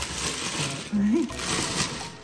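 Plastic packaging crinkling and rustling as it is handled, with a short voiced sound about halfway through.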